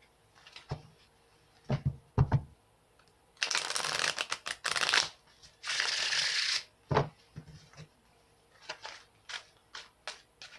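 A tarot deck being shuffled by hand: a few short knocks of the cards, then two spells of rapid shuffling, the first about a second and a half long and the second about a second, then a knock and some light card clicks.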